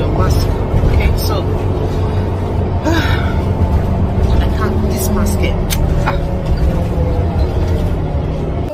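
Steady engine and road rumble heard inside the cabin of a moving city bus, with scattered clicks and rattles.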